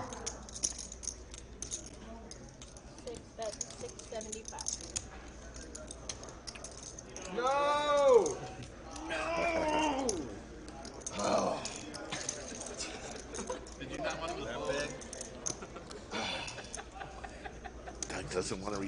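Poker chips clicking and clattering as they are handled and stacked at a card table, under quiet table chatter, with one short drawn-out voiced exclamation, rising then falling, about eight seconds in.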